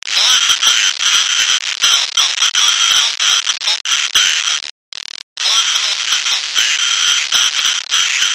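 A voice heavily disguised by a voice changer, speaking Dutch in short phrases: thin and distorted, with almost no low end, and a brief pause near the middle.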